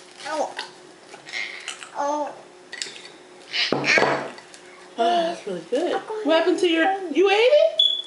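Young children babbling and vocalizing without clear words, in short rising and falling bursts that grow busier in the second half.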